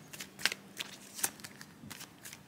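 A deck of tarot cards being shuffled in the hands: a few faint, sharp card snaps and flicks.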